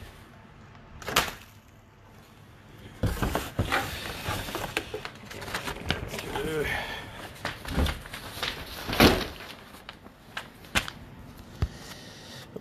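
Packaging being handled: rustling paper and plastic with scattered knocks and clicks. One sharp knock about a second in, then busier, irregular handling noise from about three seconds on.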